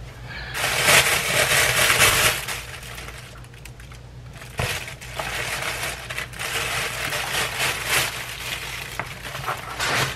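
Thin plastic bag and paper bag crinkling and rustling as a packed meal is unwrapped, in two long stretches of crackly rustle, the first the louder.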